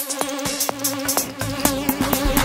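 Techno track: a steady held synth tone over ticking hi-hats, with the kick drum dropped out, coming back in about a second and a half in.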